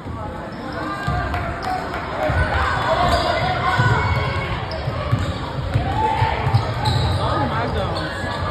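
A basketball bouncing and players' feet on a hardwood gym floor, repeated irregular low thumps that pick up about a second in, with spectators' voices calling out over them in the gym hall.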